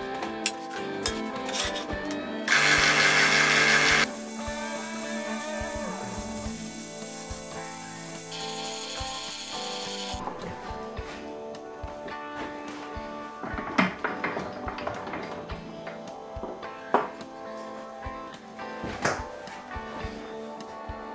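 Background music over the running of a Record Power DML250 mini wood lathe, with tool noise from the wood being turned; a louder stretch of tool noise comes a couple of seconds in and lasts about a second and a half.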